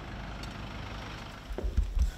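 Low, steady rumble of city street traffic. Near the end come a few dull, heavy thumps.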